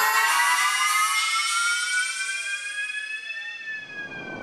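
Siren-like synthesizer tone sliding slowly upward in pitch for about three and a half seconds, then turning down near the end, with no bass or beat under it and fading as it goes.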